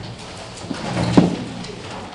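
Classroom background noise: an indistinct murmur of room sound with a brief pitched sound about a second in.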